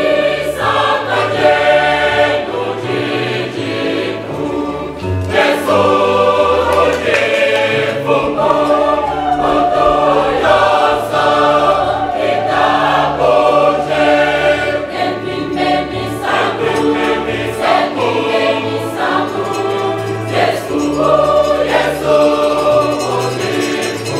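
Mixed choir of men's and women's voices singing the first verse of a Tshiluba gospel hymn.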